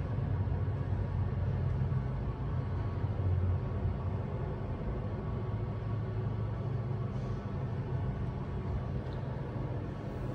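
Westinghouse dry-type hydraulic service elevator in travel: a steady low hum and rumble from the car and its hydraulic drive.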